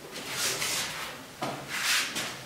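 Felt whiteboard eraser wiped across a whiteboard in two long rubbing strokes.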